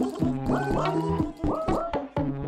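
Electronic dance music in a DJ set. A loop repeats about every two seconds: short upward-bending pitched sounds over a held bass note, with clicking percussion.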